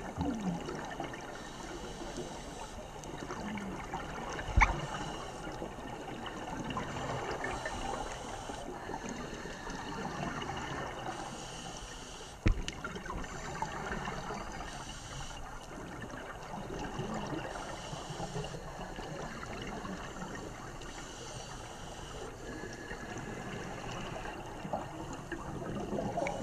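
Underwater sound of a scuba dive: a steady gurgling wash of water and divers' exhaled regulator bubbles, with hiss that swells and fades every few seconds. Two sharp knocks stand out, about a fifth of the way in and again about halfway through.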